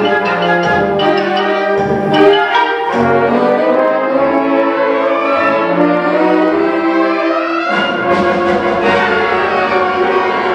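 Symphonic wind band, brass and woodwinds, playing sustained chords over low brass notes. A little after three-quarters of the way through, the low notes drop out and the higher winds carry on.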